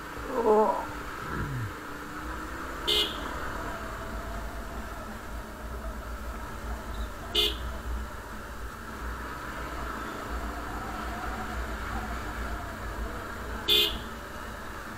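Motorcycle riding at low speed with a steady engine and wind rumble, and three short, identical horn toots: about three seconds in, midway, and near the end. Just after the start comes a loud, brief sound that falls in pitch.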